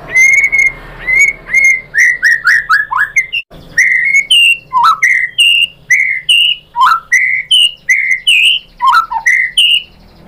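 White-rumped shama singing a loud, unbroken run of clear whistled notes. It opens with a quick flurry of short falling notes, then delivers about two notes a second, several of them sliding down steeply in pitch.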